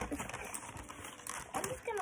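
Cardboard packaging being handled and pulled about: dry scraping and rustling of the card, with a short falling vocal sound near the end.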